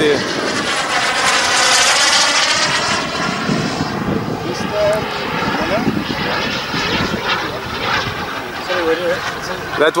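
Kingtech K140 turbine of an RC model jet in flight, a jet whine that is loudest in the first three seconds as it passes, with a sweeping, phasing sound, then eases as the jet moves away.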